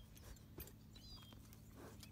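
Near silence: faint outdoor background, with a brief faint high chirp about halfway through.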